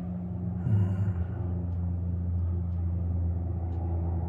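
A steady low hum or rumble from a machine, with a short faint sound about a second in.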